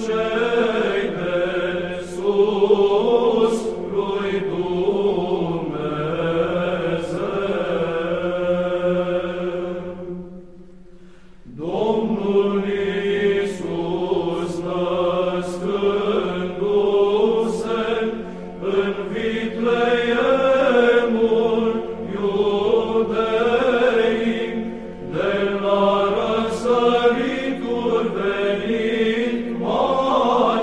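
Byzantine chant: a slow, melismatic sung line over a held low drone. It drops away briefly about ten seconds in, then comes back with a rising note.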